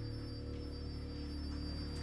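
Background music: a low, sustained chord held steadily.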